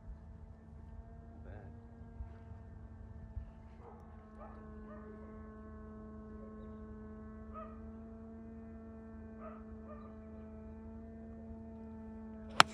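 A steady low hum with several even overtones. Faint, short barks come now and then, about every two to three seconds, from a dog far off.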